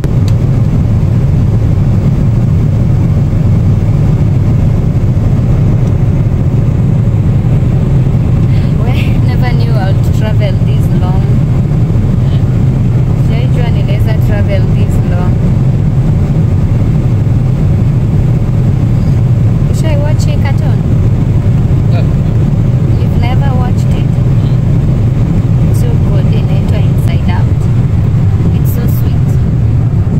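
Airliner cabin noise: a loud, steady low rumble of the jet engines and airflow, with faint voices in the cabin at times.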